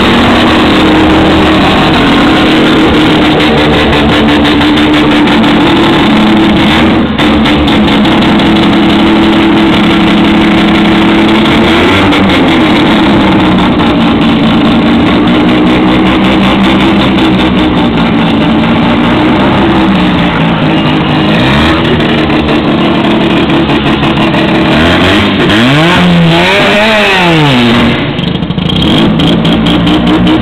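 Mazda 12A twin-rotor rotary engine in a Toyota Corolla, running loud and revving up and down as the car drives. There are sharp rev swells about twelve seconds in and again near the end.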